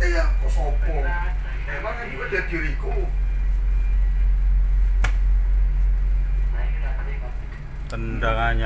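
Steady low drone of the boat's engine running, heard from on board, with a single sharp click about five seconds in.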